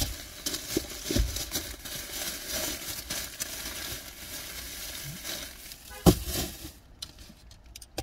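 Rustling and crinkling as things are handled and rummaged through inside a car, with a knock about a second in and a sharper one about six seconds in; it goes quieter near the end.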